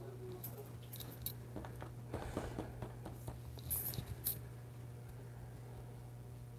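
Light clicks and clinks of small hard painting tools being handled: a cluster in the middle and a few sharper clinks about four seconds in, over a steady low hum.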